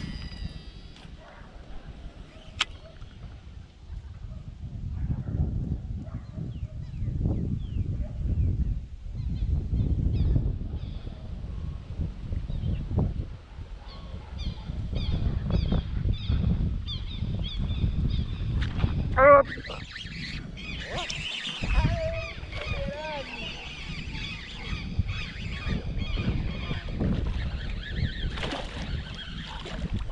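Wind buffeting the microphone throughout, with waterfowl honking repeatedly in the second half; the loudest call comes a little past halfway.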